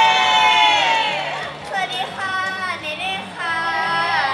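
Several young women cheering together in high voices, heard over the stage microphones: one long shout that tails off about a second in, then shorter calls and talk.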